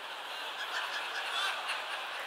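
Audience laughing, a diffuse wash of many voices that swells slightly.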